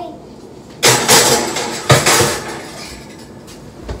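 A glass baking dish set into the oven and the oven door shut: two loud clattering knocks about a second apart.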